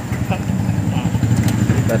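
A vehicle engine idling close by, a steady low rumble, with faint voices in the background.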